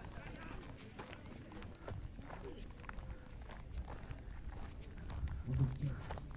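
Footsteps on dry ground and grass as someone walks, with faint voices in the background. A man's voice close by starts near the end.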